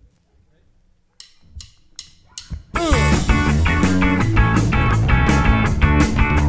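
A live rock band starts a song: four evenly spaced clicks of a count-in, then electric guitars and a drum kit come in together, loud and with a steady beat.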